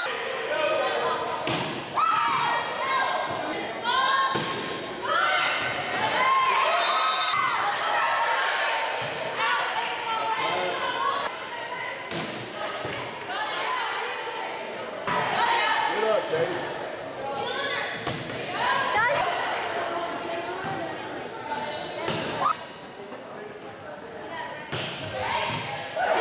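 Volleyball match play in an echoing gymnasium: repeated sharp smacks of the ball being hit, mixed with players and spectators shouting and calling out.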